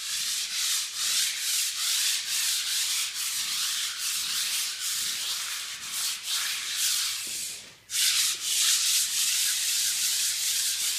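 Coarse sandpaper on a hand pad scrubbed back and forth over a painted concrete pool wall, a quick run of even scratching strokes, about three a second, keying the old paint before repainting. The strokes stop for a moment about three-quarters of the way through, then carry on.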